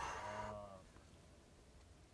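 A person's drawn-out wordless vocal sound, like a low groan or exclamation, lasting under a second at the start and sagging slightly in pitch.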